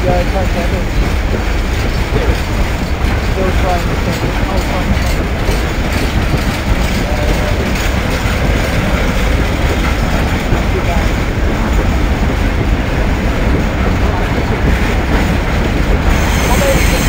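Freight train of empty bogie flat wagons rolling past close by: a loud, steady rumble of wheels on rail that holds throughout.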